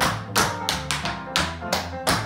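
Tap shoes striking a wooden floor in an even rhythm of sharp taps, about three a second, dancing a shim sham step over backing music.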